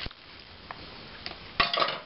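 Wooden spoon knocking against a stoneware crock of soaking pinto beans. There is a sharp clink at the start, a couple of faint taps, then a quick run of knocks near the end.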